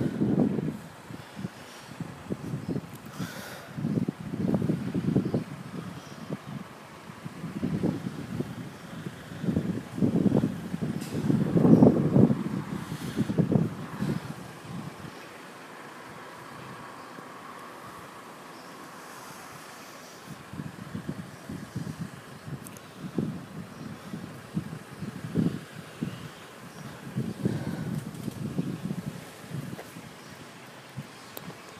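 Gusty wind buffeting the microphone in irregular low rumbling bursts, with a calmer lull about halfway through.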